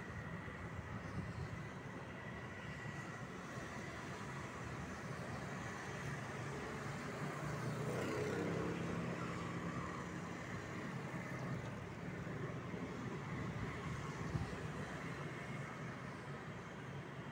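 Outdoor background noise with a motor vehicle's engine passing: it swells to its loudest about halfway through, then fades again.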